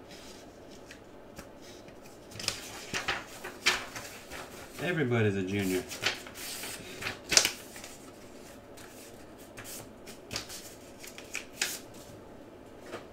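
Trading cards and card packs being handled: scattered rustles, slides and sharp clicks, the loudest a sharp click about seven seconds in. About five seconds in there is a brief wordless vocal sound, about a second long.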